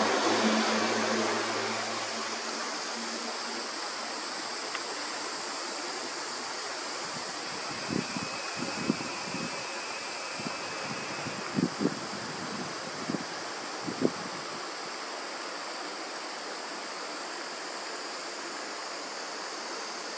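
Steady rushing of a mountain stream. A few soft low thumps come through in the middle.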